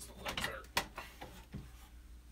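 Wooden cross-brace knocking and scraping against the workbench's wooden legs as it is held in place. There is one sharp knock about three-quarters of a second in, and lighter knocks and scrapes around it.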